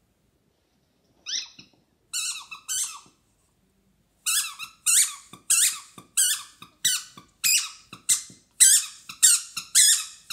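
A dog chewing a squeaky tennis-ball toy, making it squeak: three squeaks in the first few seconds, then from about four seconds in a steady run of high squeaks, nearly two a second.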